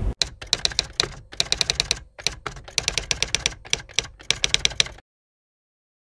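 Fast typing on a computer keyboard, keys clicking in quick runs with short pauses, stopping abruptly about five seconds in.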